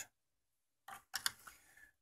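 A few faint, light clicks about a second in, from a small circuit board and a screwdriver being handled against the TV's plastic housing; otherwise near silence.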